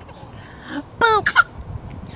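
Two short high-pitched vocal squeals about a second in, the first gliding down in pitch, the second briefer.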